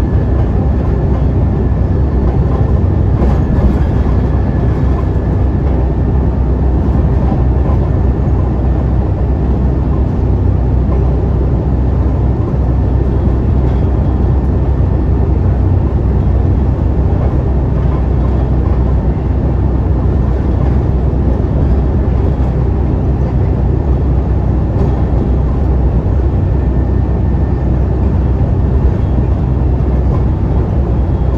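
Alexander Dennis Enviro500 double-decker bus (Euro 5) cruising at highway speed, heard from the lower deck: a steady engine drone and road and tyre noise, with a faint high steady whine running through it.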